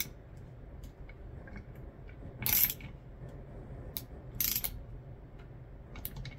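Ratcheting box-end wrench clicking as a bolt is tightened down, in two short runs of ratchet clicks about two seconds apart, with a single click between them.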